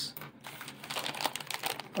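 Clear plastic accessory bags crinkling and rustling as they are handled, an irregular run of small crackles.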